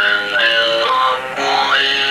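Violin played through a talk box. Held fiddle notes have their tone shaped by the player's mouth on the tube into vowel-like, talking sounds, with a rising slide about three-quarters of the way through.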